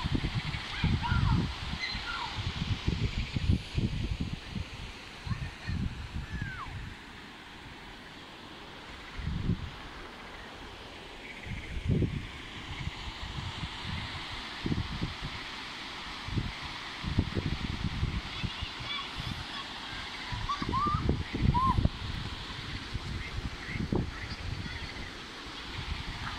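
Stream water rushing over rocky rapids as a steady hiss, with gusts of wind buffeting the microphone. A few short distant calls come about a second in, around six seconds in, and around twenty seconds in.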